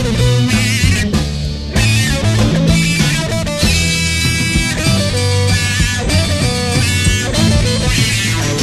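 1969 psychedelic rock recording in an instrumental passage: a plucked-string lead line plays over a moving bass guitar line.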